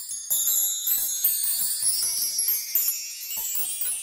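Music of high, tinkling chimes, many quick light strikes ringing over one another, growing louder about a third of a second in.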